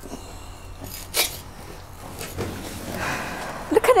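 Old fitted carpet being ripped up off the floor by hand: scattered tearing and rasping sounds, with one sharp rip about a second in.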